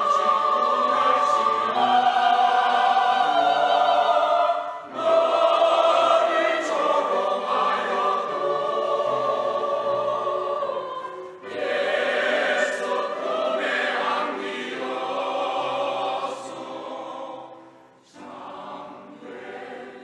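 Mixed church choir of men and women singing a Korean hymn anthem in long phrases with brief breaks between them, growing softer in the last few seconds.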